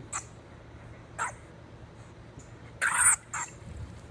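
Honey badgers snorting as they fight: a few short snorts, the longest and loudest about three seconds in.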